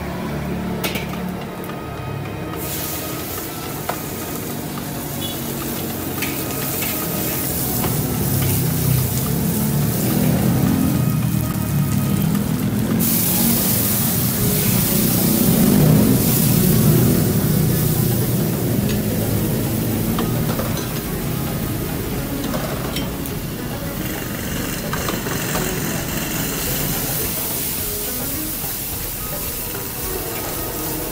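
Nasi goreng stir-frying in a hot wok. A sizzle starts sharply a couple of seconds in and surges a little before halfway, loudest soon after. A metal ladle and spatula knock and scrape against the wok throughout.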